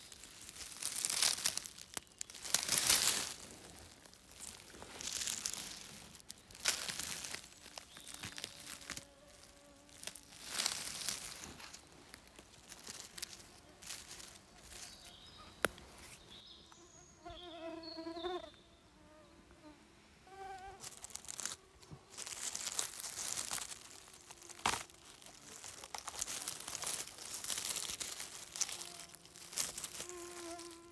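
Dry leaves, pine needles and twigs rustle and crackle in repeated bursts as porcini mushrooms are pulled up from the forest floor. A fly buzzes close by in short, wavering passes in the second half.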